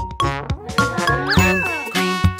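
Instrumental bridge of a children's song: a run of bright bell-like dings and chiming notes.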